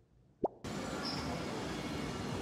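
A short upward-sweeping 'plop' sound effect about half a second in, after which steady outdoor street noise comes in and holds.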